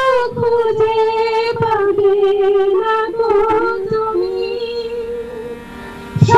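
A woman singing solo into a hand microphone in long, slowly bending held notes with a wavering vibrato. The phrase fades down near the end.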